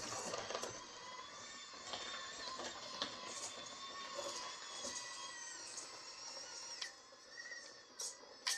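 Axial AX24 micro RC crawler's electric motor and gear train whining as it climbs a slope, the pitch drifting with the throttle and easing off near the end.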